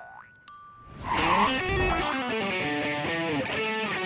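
A single ringing glockenspiel note struck about half a second in. About a second in, a loud electric guitar phrase of notes sliding downward in steps takes over.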